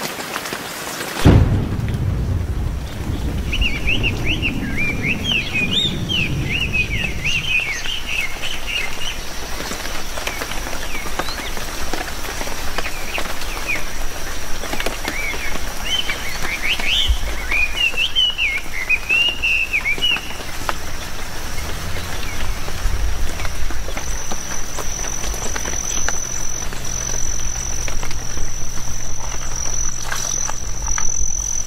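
Nature ambience of rain, birds and insects. A deep rumble starts suddenly about a second in and fades over the next several seconds, birds chirp in two bouts, and a steady high insect drone runs under it and grows louder near the end.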